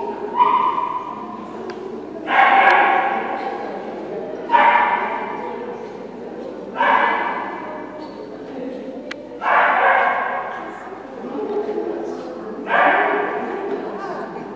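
A dog barking: five loud single barks a couple of seconds apart, each one echoing in a large hall.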